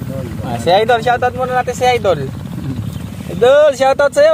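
People's voices talking and calling out in two stretches, the second about three and a half seconds in, over a steady low rumble.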